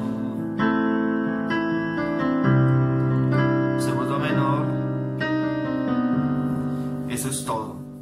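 Electronic keyboard on a piano voice playing a slow ballad chord progression in G major (G, Bm7, Am, C to C minor), each chord struck and held. Near the end the playing stops and the last chord rings out.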